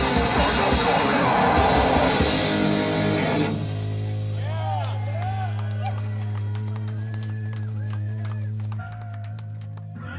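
Live heavy metal band playing loud distorted electric guitars, bass and drums; the song stops about three and a half seconds in, leaving a held low note ringing from the amplifiers. Over the ringing note the audience whoops, shouts and claps.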